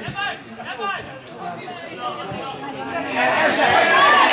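Several men's voices shouting and chattering at an amateur football match, overlapping one another and getting louder from about three seconds in.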